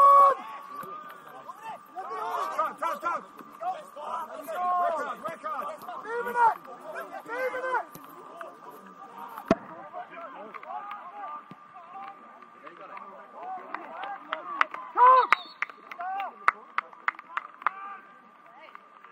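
Indistinct shouts and calls from footballers and onlookers across an open pitch, loudest right at the start. A single sharp knock about halfway through and a run of short sharp clicks near the end, typical of a ball being struck.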